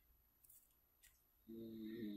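Near silence, then about one and a half seconds in a man's faint, low, steady-pitched hum or groan lasting under a second, made as an exasperated pause in speech.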